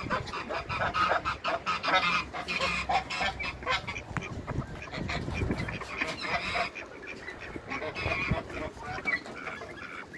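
A group of backyard ducks calling: a dense run of short, overlapping quacks, busiest in the first few seconds.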